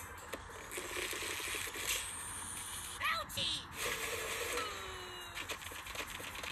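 Cartoon soundtrack played from a screen and picked up through the air by a phone: short squeaky character voice sounds and sliding, whistle-like sound effects.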